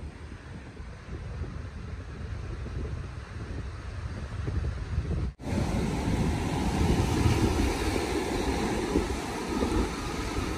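Ocean surf washing on a sandy beach, with wind buffeting the microphone. About halfway through, a cut brings it in louder and closer.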